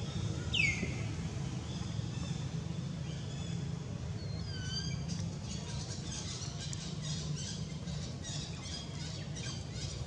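Birds calling: a loud, quick downward squeal about half a second in, a few short chirps around four to five seconds, then rapid repeated chirping through the second half, over a steady low hum.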